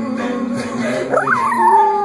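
A chihuahua howling along to a song: about a second in, a high howl leaps up in pitch and then slides slowly down, over the music.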